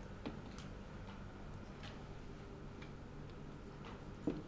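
Faint, irregularly spaced light clicks and taps of a marker against a whiteboard, over a low steady hum.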